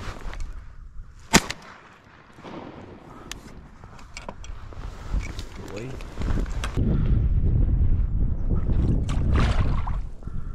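A single 20-gauge shotgun shot about a second and a half in. From about six seconds on, a loud low rumble of wind on the microphone with rustling as the shooter moves through dry marsh grass.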